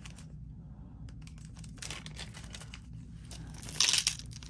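Crinkling and rustling of small plastic bead packaging being opened. Near the end comes a short, brighter clatter as glass beads are tipped into a plastic bead tray.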